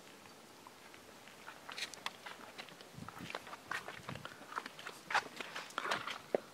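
Faint footsteps on stone pavement, a scatter of light taps and clicks about two or three a second, beginning about a second and a half in.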